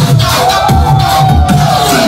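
Loud bass-heavy electronic club music with a pulsing bass beat and one long held note over it, and a crowd shouting.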